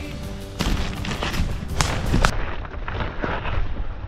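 Footsteps of someone running through woodland undergrowth, heard as irregular heavy thuds, knocks and rustling close to the microphone, starting about half a second in.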